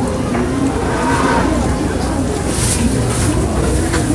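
Busy street-market ambience: indistinct voices of shoppers and vendors over a steady low rumble that grows a little stronger in the second half.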